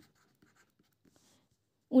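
Faint, light scratching of a stylus writing on a tablet, a few short strokes. A woman's voice starts near the end.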